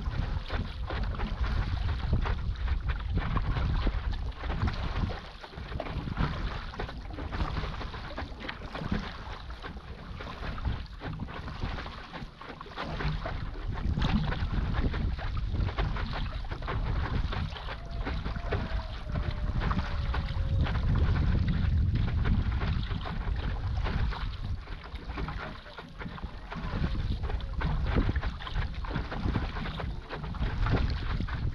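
Water splashing and rushing around a stand-up paddleboard moving across open sea, with wind buffeting the microphone.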